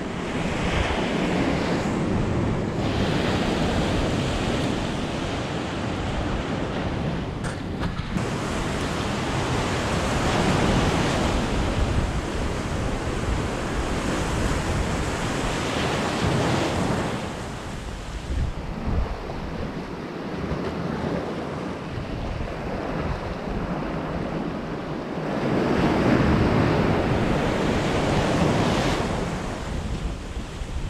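Surf breaking and washing over rocks at the foot of a seawall, a steady rush that swells and eases as the waves come in.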